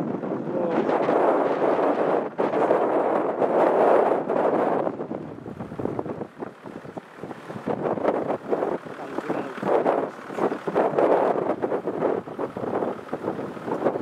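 Strong gusty wind buffeting the microphone, blowing snow across the ground. The gusts are heaviest in the first few seconds, ease briefly about halfway through, then pick up again.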